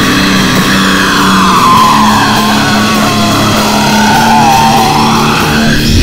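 Stoner/sludge metal instrumental: heavily distorted electric guitars hold low notes while a high lead line slides slowly down and back up.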